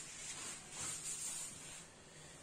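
Sheets of paper rustling and sliding as they are handled on a desk, in uneven swells.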